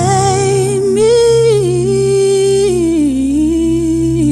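A woman singing a slow line of long held notes with vibrato, stepping up about a second in and back down later, over sustained chords on an electronic keyboard.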